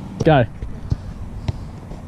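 A soccer ball thuds twice, about a second in and again half a second later, as it is kicked and bounces on the grass.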